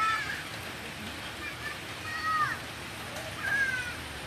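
Three short, high-pitched distant shouts from football players, the second one falling in pitch at its end, over a steady outdoor hiss.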